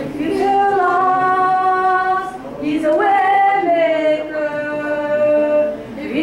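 A woman's voice singing a hymn unaccompanied, holding long notes and sliding between pitches, with a short break between phrases about two and a half seconds in.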